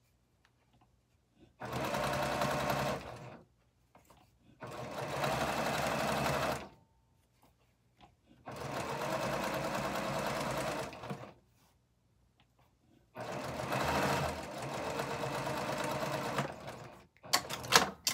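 Baby Lock Accomplish sewing machine stitching patchwork pieces in four runs of about two to four seconds each, stopping in between. A few sharp clicks come near the end.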